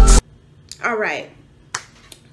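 Background music cuts off suddenly just after the start, followed by a short, wordless vocal sound from a woman and two sharp clicks, the second louder, near the end.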